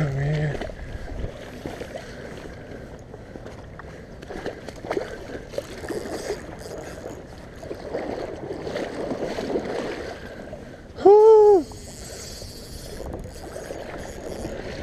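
River water and handling noise while a hooked steelhead is fought on a spinning rod and reel. There is a short voiced sound at the very start, and a loud, brief cry that rises and falls in pitch about eleven seconds in.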